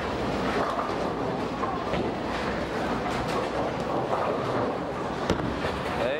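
Steady rumbling din of a bowling alley, with a single sharp knock about five seconds in as a bowling ball is released onto the lane and starts rolling.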